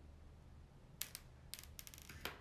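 Near silence over a low steady hum, broken by a few short light clicks: one about a second in, then a quick cluster of four or five near the end.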